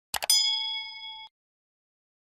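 Two quick clicks followed by a notification-bell ding sound effect: a bright ringing chime that fades and cuts off suddenly about a second later.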